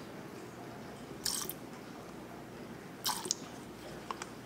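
Two short, soft rustling scrapes of gloved hands handling the soap pitcher and containers, about a second in and again about three seconds in, over faint room tone.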